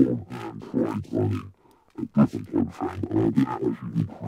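Recorded dialogue reworked into a neurofunk-style bass: pitch-shifted, distorted, filtered with LFO modulation and now run through Ableton's Saturator. It plays back as rough, heavy bursts that still follow the choppy rhythm of speech, with a short break in the middle.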